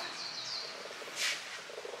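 Small birds chirping, with short repeated high chirps at the start and a single louder, higher call about a second in.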